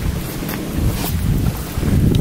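Wind buffeting the camera microphone: an uneven low rumble.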